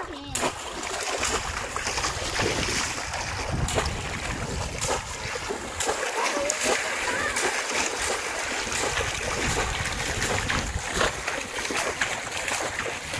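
Water splashing as a boy runs and wades through shallow water, plunging a bamboo polo fish trap down into it and lifting it out again; a continuous, uneven sloshing with many sharp splashes.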